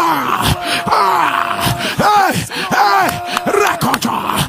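A man's voice making loud, drawn-out exclamations that repeatedly swoop up and fall away in pitch, in fervent prayer into a headset microphone. A steady held note sounds underneath.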